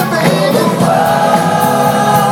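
Live rock band playing, with several voices singing together in long held notes.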